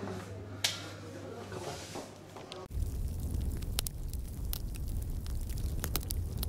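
Hands rubbing and handling bare skin during an arm and hand massage, with one sharp click about half a second in. Just under halfway through, this cuts off abruptly and a louder low rumble with scattered crackles takes over.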